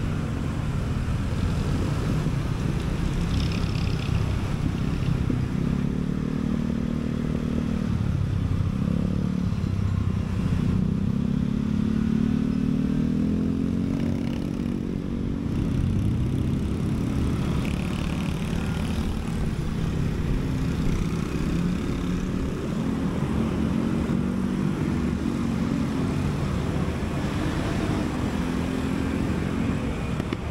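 Honda Beat scooter's small single-cylinder engine running as the scooter rides through traffic. Its pitch falls and rises a couple of times as it slows and speeds up, over steady road and wind noise.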